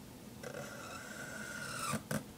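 Felt-tip marker squeaking on paper while drawing: one steady high squeak lasting about a second and a half, growing louder and dropping in pitch at the end.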